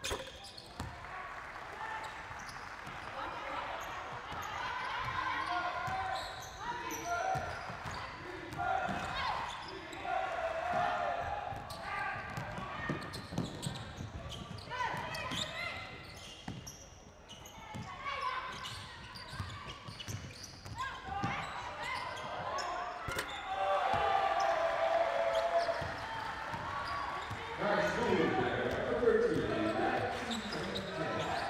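A basketball being dribbled on a hardwood court during live play, with scattered voices calling out on the court.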